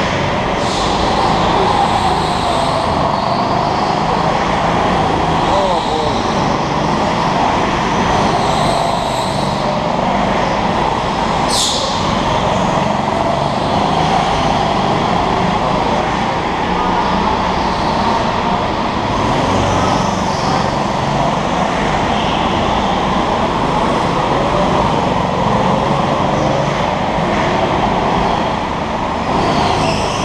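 Go-kart engines running around an indoor track, a steady din whose engine note rises and falls as the karts lap. A brief high squeal comes about twelve seconds in.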